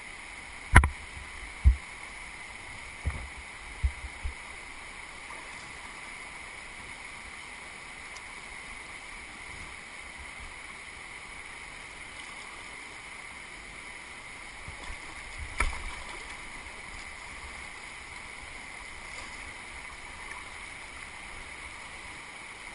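Fast, high floodwater rushing steadily past a kayak. A few sharp knocks sound in the first four seconds, the loudest about a second in, and one more about sixteen seconds in.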